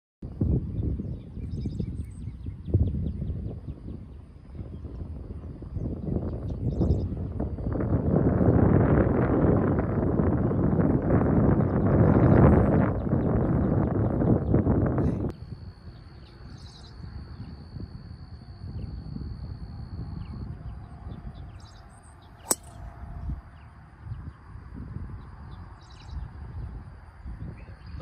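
Wind rumbling and buffeting on the microphone through the first half, stopping abruptly about fifteen seconds in. Outdoor ambience with birds chirping follows, with one sharp click a few seconds later.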